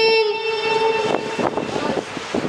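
A boy's chanting voice holds one long, steady note that ends about a third of a second in. Then comes a pause of background noise with a few small knocks.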